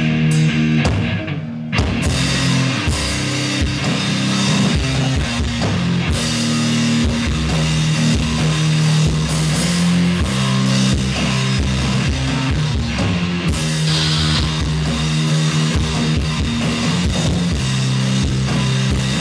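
Live rock band playing a heavy song: electric guitars over a full drum kit, loud and steady, with a sharp hit about two seconds in after which the whole band plays.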